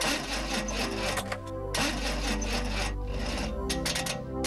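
A car engine being cranked by its starter in slow, raspy stretches without catching: a weak battery failing to start the car. Music plays underneath.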